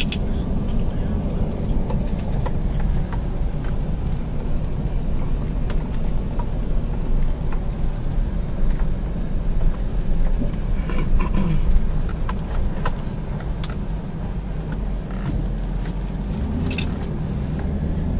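Steady low engine and tyre rumble heard from inside the cabin of a car driving slowly, with scattered light clicks and rattles.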